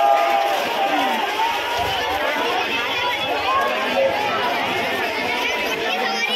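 A large crowd of many voices talking and calling out over one another, steady throughout.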